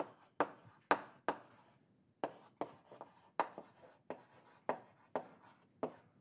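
Chalk writing on a blackboard: a quick series of short scratching strokes and taps, about a dozen in all, with a brief pause around two seconds in.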